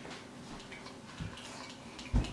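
Faint, irregular light clicks and taps of fingers and a ghost chili pepper against a small glass cup of hot sauce as the pepper is dipped, with one slightly stronger tap about a second in.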